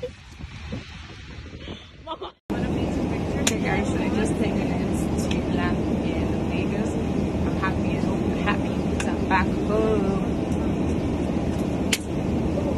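A short laugh over quiet street sound, then after a brief cut to silence about two and a half seconds in, a steady aircraft cabin hum with faint voices in the background.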